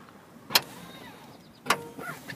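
Two sharp clunks about a second apart as the trunk pull tabs release the rear seatback latches of a 2013 Toyota Camry LE, letting the split seatbacks unlatch and fold.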